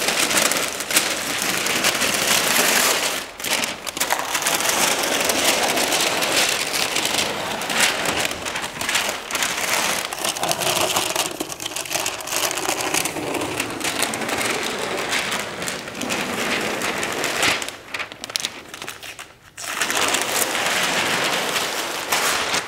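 Masking paper and tape being peeled off freshly painted baseboard and crumpled, a continuous crinkling and rustling of paper with a short pause near the end.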